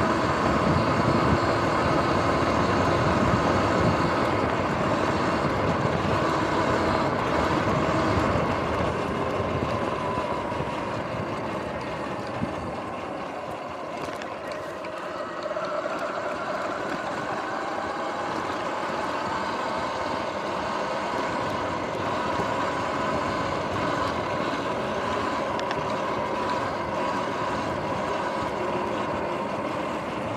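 Electric dirt bike ridden over a dirt trail: the motor's whine rising and falling with speed over the rumble of the tyres on dirt. It eases off and quietens a little before the middle, then picks up again.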